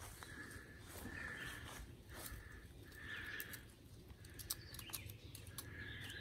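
Faint buzzy animal call, each about half a second long, repeating roughly once a second, with scattered light crackles like steps on leaf litter.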